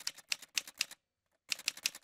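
Typing sound effect: rapid key clicks, about eight a second, in two runs with a pause of about half a second between them.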